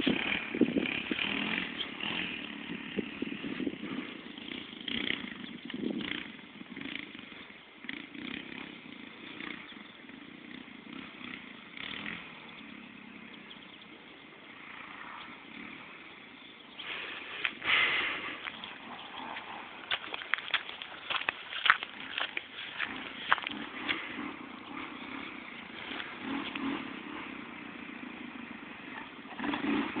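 Small off-road vehicle engine running and revving on the trail, out of sight: louder at the start, fading away through the middle and coming back near the end.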